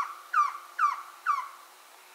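An animal's short, falling cries, four of them about two a second, each a little fainter, stopping about a second and a half in.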